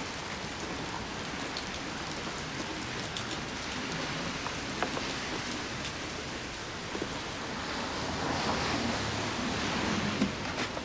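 Steady rain falling, an even hiss that swells slightly near the end, with a few faint ticks.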